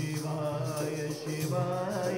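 A man chanting a Hindu devotional hymn into a microphone over a steady low drone, accompanied by the rhythmic jingling of a chimta, the tongs-like instrument with metal jingles.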